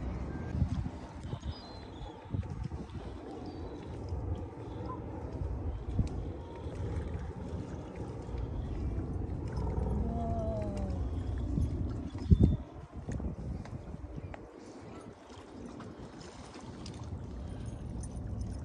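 Outdoor lakeside ambience: wind rumbling on the microphone over lake water lapping against rocks, with a sharp knock about twelve seconds in.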